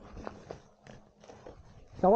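A few faint, short clicks and rustles over a quiet outdoor background.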